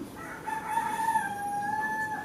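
A rooster crowing in the background: one long held call that steps slightly down in pitch partway through.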